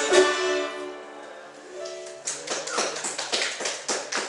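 An acoustic string band ends a tune: the last notes ring and fade out within about the first second. From about halfway in comes a run of sharp, irregular taps or claps.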